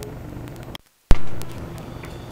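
Steady low background noise with a few faint clicks, broken just under a second in by a moment of dead silence and then a sudden loud pop that fades over about half a second: the sound of the recording being cut or restarted between slides.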